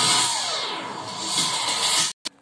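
Logo-intro sting played from a computer screen: music under a loud, hissing whoosh that swells, with a falling glide of tones partway through.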